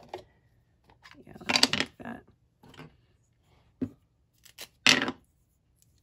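Craft tools handled on a tabletop: a few short clicks, knocks and scuffs as a Distress ink pad and its plastic lid are set down and an ink blending tool is picked up. The loudest noises come about a second and a half in and near the end, with a sharp click between them.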